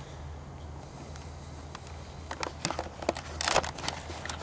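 Handling noise close to the microphone: a run of sharp clicks and then a short, louder rustling scrape, starting about two seconds in, over a steady low hum.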